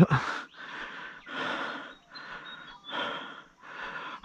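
A man breathing hard close to the microphone: about five noisy breaths in and out, each under a second.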